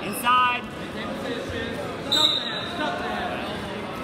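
Voices in a gymnasium during a wrestling takedown: a loud short shout right at the start over general chatter, and a brief high squeak about halfway through.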